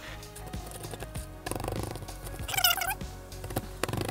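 Wet plaster dig block being scraped and broken apart by hand in a plastic bowl of water, with scattered scrapes and clicks. There is a brief squeaky rasp about two and a half seconds in, and background music runs underneath.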